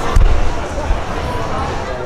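A heavy low thump just after the start, then muffled rumbling noise of a phone being handled against its microphone, with faint voices behind.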